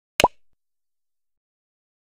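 A single short 'plop' sound effect, a sharp click with a quick upward glide in pitch, about a fifth of a second in.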